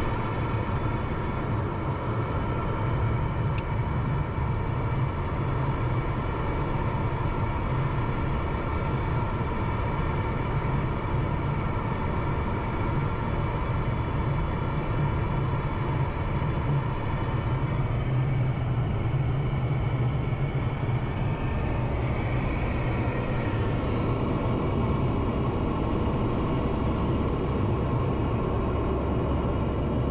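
Pilatus PC-24's twin Williams FJ44 turbofan engines running at taxi power, heard from inside the cockpit: a steady rumble under several steady tones. About halfway through, some of the higher tones fade.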